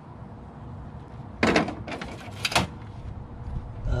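Two short scraping rattles about a second apart as an expansion card is pulled out of its slot in a metal computer case.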